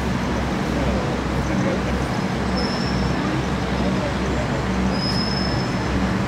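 Steady low rumble and hiss of outdoor noise, with faint chatter from a waiting crowd.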